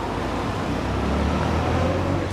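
Low, steady rumble of road traffic, swelling slightly in the middle.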